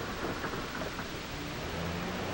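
Steady rumbling, hissing noise on an old optical film soundtrack, with no clear tone or rhythm.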